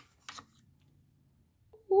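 Near silence with a faint, brief handling sound as a stone cabochon is picked out of a plastic compartment tray, then a woman's drawn-out 'Ooh' starting right at the end.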